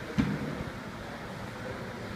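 One loud thud, about a fifth of a second in, of feet landing on a plyo box during a box jump, over a steady room hum.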